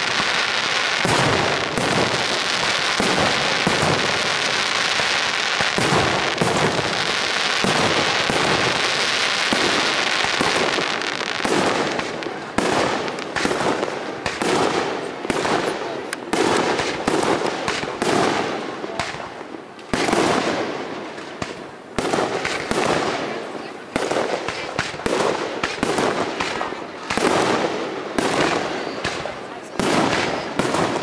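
Aerial fireworks display. For about the first twelve seconds a dense, continuous barrage of bangs and crackle, then separate shell bursts, each a sharp bang trailing off in echo.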